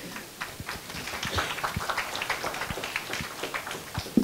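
Scattered applause from a small audience, with many separate claps that build about a second in and thin out near the end.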